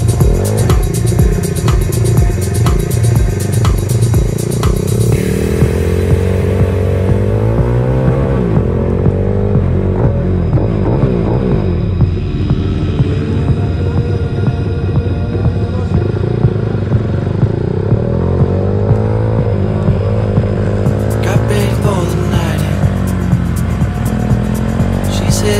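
Pit bike's single-cylinder engine revving up and down through the gears as it rides, its pitch rising and falling, mixed with electronic music that has a steady beat.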